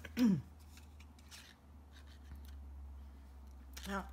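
Faint clicks and rustling as a plastic handheld craft punch and a small piece of card stock are handled and fitted together, with a short vocal sound near the start.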